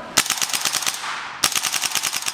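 VFC HK416C gas blowback airsoft rifle firing two full-auto bursts at about fifteen shots a second, the second starting about one and a half seconds in. The tester finds the rate of fire a little slow, but the rifle cycles without jamming.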